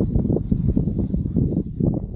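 Wind buffeting the microphone of a camera moving fast downhill: an irregular, gusty low rumble.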